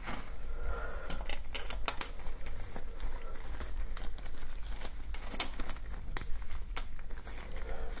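Exam gloves rustling and crinkling, with scattered sharp light clicks from thin metal tweezers being handled.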